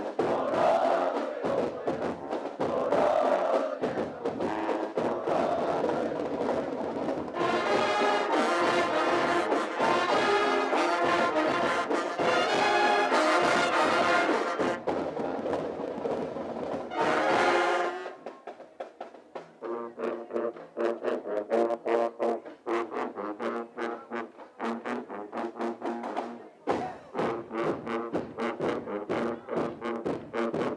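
School marching band playing a tune on trumpets and sousaphones with bass drums. The full band is loud for the first eighteen seconds or so, then drops to a quieter, choppier passage of short repeated notes and drum hits, and swells again near the end.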